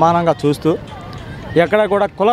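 A man speaking Telugu into a handheld microphone, with a pause of nearly a second in the middle during which faint street background noise is heard.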